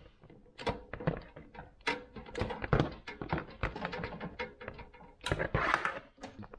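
Plastic power strip and smart plug being handled as the plug is pushed into an outlet on the strip: irregular clicks and knocks with cords rustling. A louder scraping rustle comes about five seconds in.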